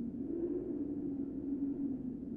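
Experimental music: a soft, sustained, hum-like band of filtered noise, sinking slowly in pitch, with no distinct strikes.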